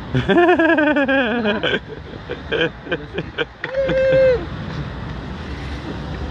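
A young man's loud, drawn-out yell, wavering and falling in pitch, then a few short vocal bursts and a brief held call about four seconds in, over a steady outdoor background of wind and water.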